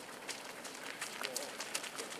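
Footsteps of a group of soccer players jogging in football boots on dry, hard-packed dirt: many quick, irregular footfalls overlapping.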